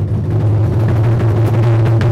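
Large Japanese taiko drums (nagado-daiko) beaten with wooden bachi sticks in a rapid roll; the strokes run together into a steady, loud low rumble, with a sharper stroke standing out near the end.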